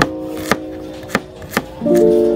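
Chef's knife chopping a red onion on a wooden cutting board: four sharp knocks of the blade on the board, about half a second apart. Background music with a sustained plucked chord plays underneath, a new chord striking near the end.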